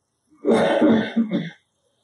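A person clearing their throat and coughing: a long rough burst starting about half a second in, then a shorter one just after.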